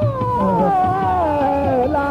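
Hindustani classical male voice sliding a held note slowly downward in one long glide, over tabla strokes and a steady drone.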